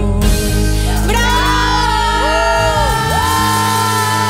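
Live worship band music: several singers hold long notes that slide up and arch back down over a sustained chord from the band. The deepest bass drops away about three seconds in.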